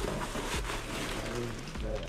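Plastic carrier bag rustling and crinkling as it is gripped by its handles and lifted, with faint voices in the background.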